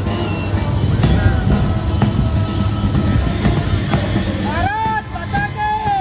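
Military band music from the naval band on the frigate's flight deck, heard faintly under a heavy low rumble, with a few knocks. Near the end come loud rising-and-falling cries.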